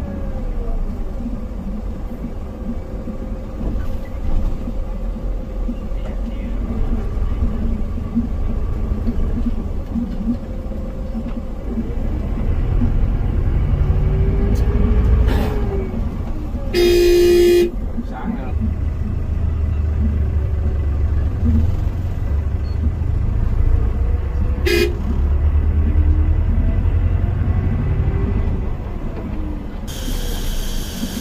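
Coach bus engine and road noise heard from inside the driver's cab, a low steady rumble that swells at times. A vehicle horn sounds loudly for about a second just past the middle, and a second short toot comes about eight seconds later.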